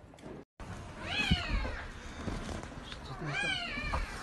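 Newborn Belgian Malinois puppies crying in a whelping box: two high cries, each rising and then falling in pitch, about a second in and again past three seconds.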